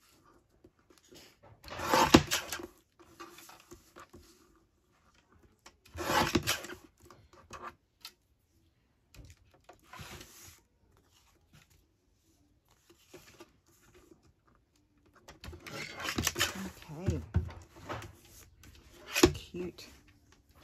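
A guillotine paper trimmer cutting printed card: three short cutting strokes about four seconds apart, the first the loudest. Near the end, paper and the trimmer are handled, with some low mumbled speech.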